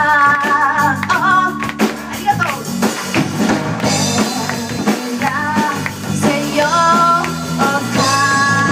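A live rock band playing: drum kit, electric bass and acoustic guitar, with a woman's voice singing held, wavering notes in several phrases over the band.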